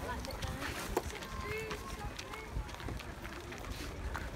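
Faint chatter of several other people talking in the background, over a low rumble of wind on the microphone, with a single click about a second in.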